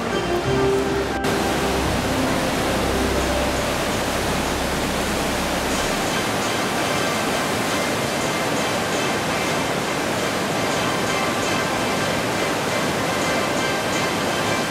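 Steady rush of the Coquihalla River's rapids running through the narrow rock canyon below the bridge, with quiet music underneath. A low rumble under it stops about six seconds in.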